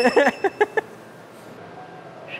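A man laughing in a few quick bursts that stop under a second in, followed by quiet room tone.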